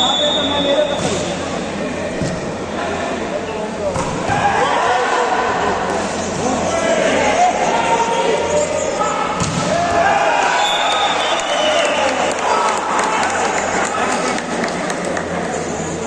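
Volleyball rally echoing in a large indoor hall: the ball is struck sharply by hand several times amid continuous shouting from players and spectators.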